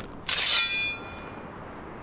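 A sword drawn from its scabbard: a short click, then a loud metallic scrape of the blade about a third of a second in, leaving a high ring that fades out within about a second.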